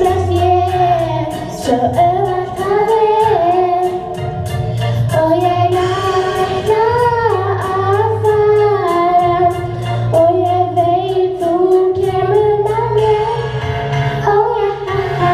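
Children singing a song together over an instrumental accompaniment with a steady beat and bass.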